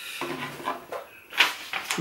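Handling noises at a workbench: a knife and a length of sisal rope being moved about, with a short, sharp papery rustle about one and a half seconds in as a sheet of paper is picked up.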